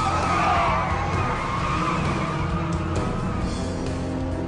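Car tyres squealing in one long, wavering screech that fades out after about three seconds, over action-film music.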